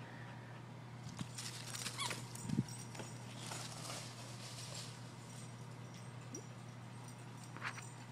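Faint patter and rustling of a dog running across dry fallen leaves, over a steady low hum. A short, slightly louder low sound comes about two and a half seconds in.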